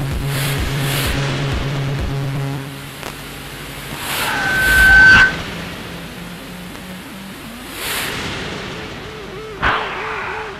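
Live electronic music from hardware synthesizers: a pulsing bass line stops about two and a half seconds in, then a rising noise sweep builds and cuts off suddenly about five seconds in. Sparser, quieter sounds follow, with a sharp hit near the end.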